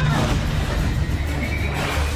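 Epic orchestral theme tune from the opening titles of an animated dragon TV series, starting suddenly, with a held high note that rises near the end.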